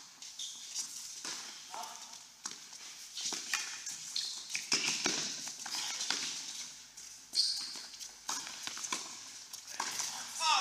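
Tennis balls being struck with racquets and bouncing on an indoor hard court during a doubles rally. It is a string of sharp pocks at irregular intervals, with shoe scuffs between them, heard in a large indoor hall.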